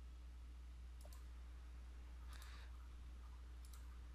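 Near silence over a steady low hum, with a few faint clicks about a second in and again near the end.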